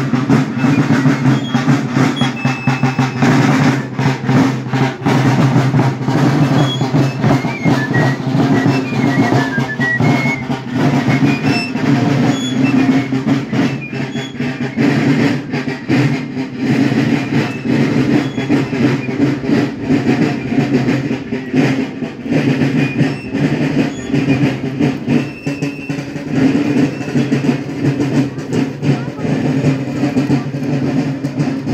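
Marching band of a Belgian folkloric march playing a march, side drums beating continuously under the band's instruments.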